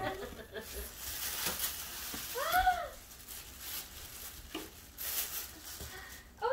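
Tissue paper rustling and crinkling as it is pulled out of a paper gift bag. About two and a half seconds in, a single short rising-and-falling voiced sound, like an "ooh", cuts through it.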